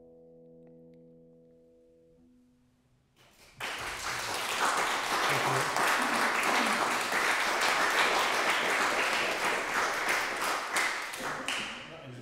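The last chord of a nylon-string classical guitar rings out and fades over the first couple of seconds. After a brief hush, audience applause starts about three seconds in and holds steady until near the end.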